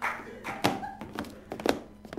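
A few sharp knocks about half a second apart: an actor making clip-clop hoofbeats for an imaginary horse.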